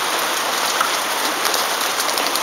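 Steady rain falling, an even hiss with faint ticks of single drops.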